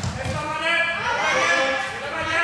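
High-pitched voices shouting and calling over one another in a reverberant sports hall during floorball play.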